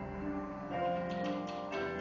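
Percussion ensemble playing: several held, pitched notes sound together, with a few sharp clicking strikes a little after a second in.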